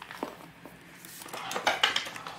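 The metal chain and clasp hardware of a Coach Dakota leather bucket bag clinking as the packed bag is handled, with small items shifting inside. There are a few light clicks, then a quick run of clinks near the end.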